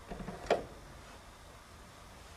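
A single sharp click about half a second in, then faint steady room noise.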